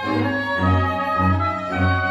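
A small chamber ensemble of violins, viola, cello, double bass, flute and oboe playing live. The low strings pulse in repeated notes about every half second under sustained high notes from the winds and violins.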